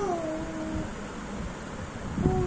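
A toddler's short vocal sound, a single note that dips in pitch and then holds level for under a second, over a steady background hiss.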